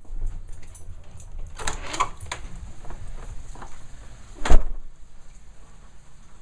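A house door being opened, with handling and scraping noises, then one sharp, loud bang about four and a half seconds in.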